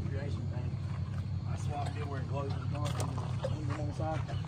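A steady low engine rumble, like a vehicle idling, with faint voices talking in the background.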